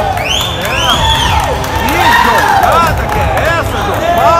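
Spectators calling out and whooping: many overlapping voices, each rising and falling in pitch, with no single clear word.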